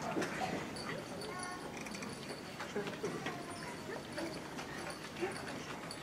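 Low murmur of a seated audience in a large hall, with light footsteps and small scattered knocks as students cross the stage.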